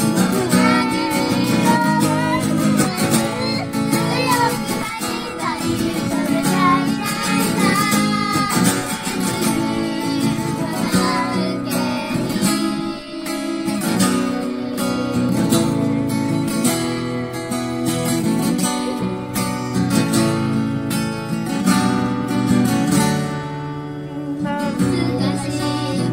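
A young girl singing a song to strummed acoustic guitar accompaniment.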